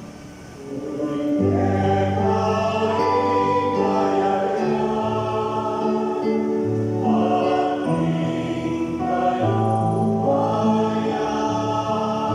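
Mixed choir of men's and women's voices singing a church song in long held chords; the singing is soft at first and swells to full voice about a second in.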